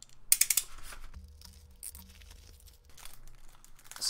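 Plastic packaging rustling and crinkling as a bubble mailer is opened and a small tool in a clear plastic sleeve is pulled out. A quick burst of sharp crackles comes about a third of a second in, then softer rustling.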